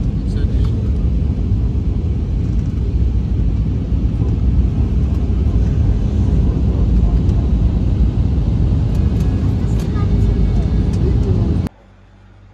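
Airliner cabin noise at a window seat: a loud, steady low rumble of engines and airflow that cuts off suddenly near the end.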